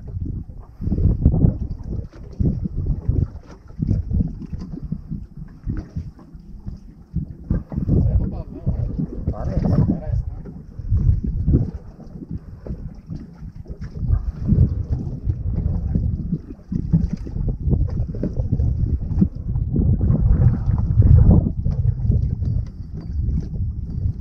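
Wind buffeting the microphone in uneven gusts, a low rumble that rises and falls.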